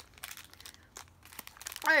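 Plastic candy packet of Zombie Skittles crinkling as it is handled, in short scattered crackles.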